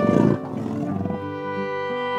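A big cat's rough, rapidly pulsing growl, loudest in the first half-second and dying away a little over a second in, over steady background music.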